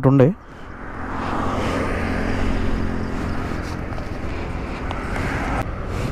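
Road traffic on a highway passing close by: engine and tyre noise rises over about a second, then holds steady before stopping abruptly near the end.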